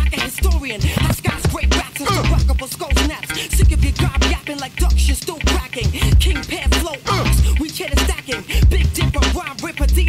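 UK hip hop track: rapped vocals over a beat with heavy bass kicks and fast hi-hats.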